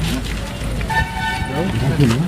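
A vehicle horn sounding once, a short steady toot about a second in, over people's voices.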